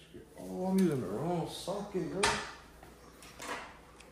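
An indistinct male voice speaking for about two seconds, with a sharp click near the end of it and a few light handling knocks afterwards.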